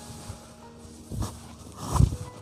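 Brief rustles and soft thumps of a saree's cloth being handled, twice, the second near the end and louder, over faint background music.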